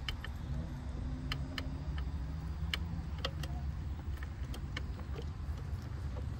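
Footsteps on brick pavers: irregular sharp clicks over a steady low rumble.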